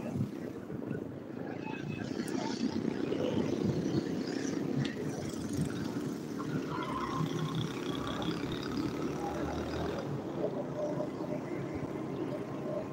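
Steady low rumble of road and engine noise while riding along a street in traffic, growing louder a couple of seconds in.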